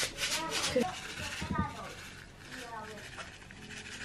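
Small plastic packet rustling as it is handled and shaken out, mostly in the first second and growing faint after, with faint voices in the background.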